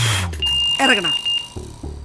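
A man blows a short, hard breath into a handheld breathalyzer, then the device gives one steady high beep lasting about a second.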